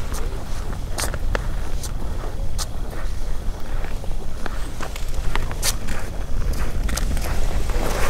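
Steady low wind rumble on the microphone, with scattered sharp clicks and light crunches through it.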